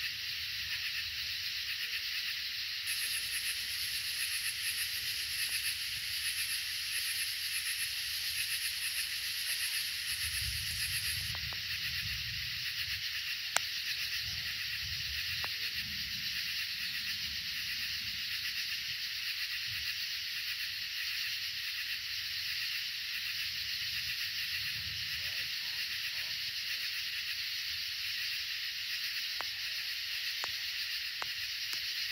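Steady high-pitched chorus of night insects, with a faster pulsing trill above it from about 3 to 11 seconds in. Low rumbles of distant thunder come and go in the middle of the stretch, and a single sharp click sounds about 13 seconds in.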